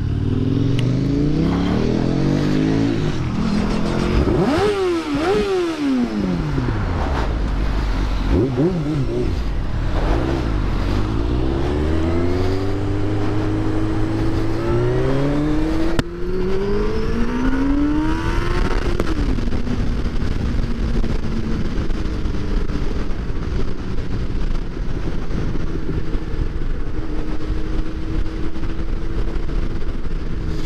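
Motorcycle engine heard from the rider's seat. For the first several seconds it revs up and drops back sharply a few times. It then pulls up steadily in one gear and settles into a steady cruise for the last ten seconds, over constant road and wind noise.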